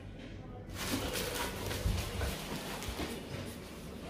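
Rustling and handling noise from a padded jacket and a hand-held camera being moved, with small clicks and a few low thumps.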